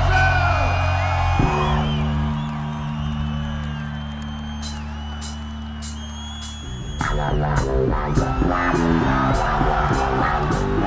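Electric bass guitar playing solo through a large concert PA, heard from the crowd: long held low notes, then a rhythmic riff about seven seconds in. Regular high ticks sound from about halfway.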